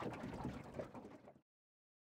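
Faint bird calls over quiet outdoor sound, fading out to silence about a second and a half in.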